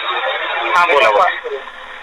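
Speech only: a man talking on a recorded telephone call, the voice thin and narrow as heard down a phone line.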